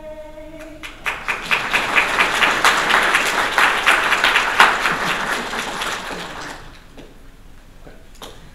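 Audience applause starting about a second in, swelling and then dying away over the next five seconds. Just before it, a singer's held final note ends.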